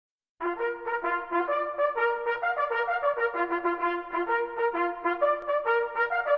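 Brass band, led by trumpets, playing a French military march: a fanfare of quick, short repeated notes in march rhythm, starting about half a second in.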